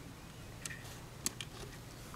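Quiet low hum with a few faint small clicks, about two-thirds of a second in and again about a second and a quarter in, from a hand handling the wired breadboard circuit.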